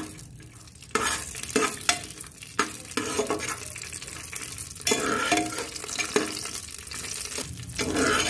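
Cashews, almonds and raisins frying in hot ghee in a pressure cooker, with a spoon scraping and stirring them across the pan's metal bottom. The sizzle and scraping jump up sharply about a second in and again near the five-second mark.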